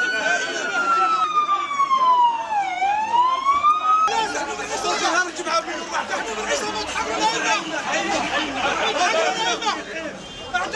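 An emergency-vehicle siren wailing, its pitch falling slowly and then rising again before it stops abruptly about four seconds in. A crowd of voices talks over it and carries on after it stops.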